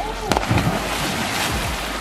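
A person crashing into a swimming pool: a sharp smack of body and board hitting the water about a third of a second in, then a steady hiss of spray and churning water.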